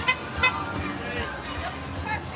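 A golf cart horn beeps twice in quick succession, two short toots about a third of a second apart, over music and voices.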